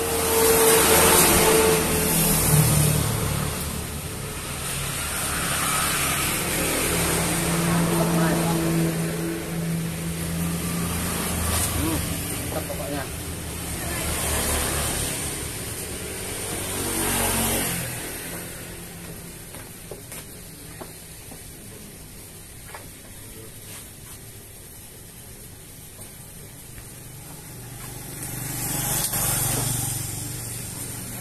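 Road traffic, mostly motorcycles, passing one after another, each swelling up and fading; quieter for a stretch in the second half until one more passes near the end.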